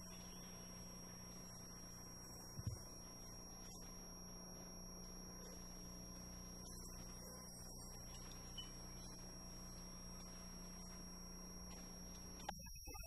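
Near silence: a steady low hum and hiss with a faint, steady high-pitched whine, and one soft thump a little over two and a half seconds in.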